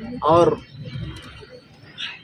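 A man says one short word, then a pause in which a bird calls faintly in the background.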